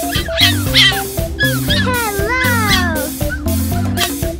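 Fennec fox giving a string of high, whining calls that slide downward in pitch, the longest a drawn-out falling whine near the middle. Background music with a steady beat plays throughout.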